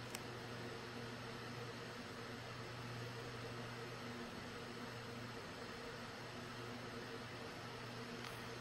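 Steady room tone: an even hiss with a faint low hum underneath, and one small click just after the start.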